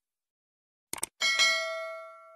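Two quick mouse clicks followed by a single bell ding that rings on and fades: a YouTube subscribe-click and notification-bell sound effect.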